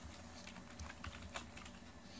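Computer keyboard typing: a run of faint, irregular key clicks.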